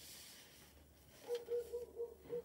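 Mostly quiet, with faint rustling of sheets of designer paper being slid over one another in the second half, alongside a faint broken mid-pitched tone.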